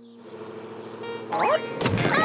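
Animated cartoon sound effects: held music notes fade out, then a few short rising glides and a sudden louder burst near the end as a cartoon toy car leaps off a ledge toward a ball pit.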